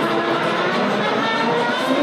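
Free improvised music for voice and electric guitar: a wordless improvising voice through a microphone and an electric guitar played together in a dense, continuous texture.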